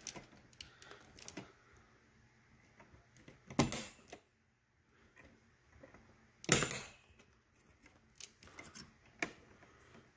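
Plastic push pins of an Intel stock CPU cooler pressed down through the motherboard holes, snapping into place with sharp clicks that lock the heatsink on. Two loud clicks come about three and a half and six and a half seconds in, with fainter clicks and handling noise between.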